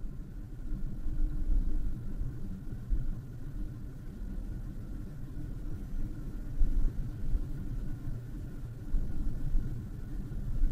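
Low, uneven background rumble with a faint steady high tone above it.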